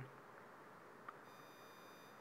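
Near silence: faint hiss, with a faint, steady, high-pitched electronic tone coming in a little over a second in.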